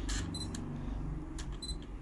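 Autofocus of a Sony A7R IV with an LA-EA4 adapter and Zeiss 135mm f/1.8 lens: short mechanical clicks from the adapter's autofocus motor driving the lens, each followed by a short high focus-confirmation beep. This happens twice, about half a second in and near the end. Focus locks quickly in one go, without hunting.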